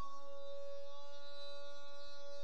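A single voice holding one long, level sung note, unbroken and without words.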